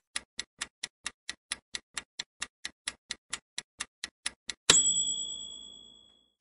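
Countdown timer sound effect: a clock ticking quickly and evenly, about five ticks a second, then a bright chime near the end that rings and fades as the countdown reaches zero.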